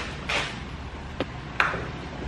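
Items being handled and shifted about in a car's back seat: a short scuff, a sharp click a little after a second in, then a louder scuff.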